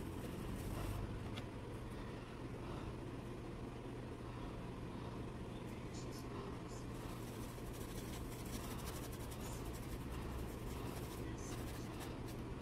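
Faint scratchy rubbing of a paintbrush scrubbing paint into cotton cloth in small circular movements, over a steady low hum.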